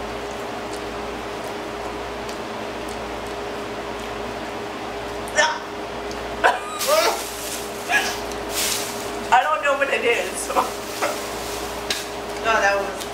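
A steady faint hum for about five seconds, then a woman's laughter: breathy bursts and giggles through hands held over her face.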